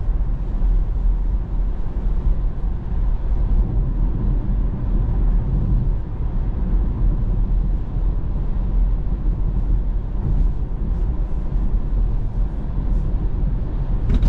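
Steady low tyre and road rumble heard inside a Tesla's cabin while cruising at about 50 mph on the freeway, with a faint steady tone above it.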